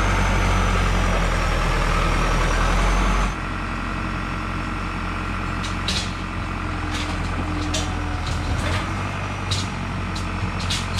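A roughly 100-horsepower John Deere loader tractor's diesel engine running steadily close by. About three seconds in, the sound drops suddenly to a quieter engine drone, with scattered sharp clicks and clanks in the second half.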